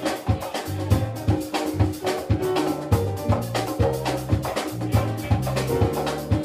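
Live salsa band playing: an electric bass line under drums and hand percussion, with a steady, even beat.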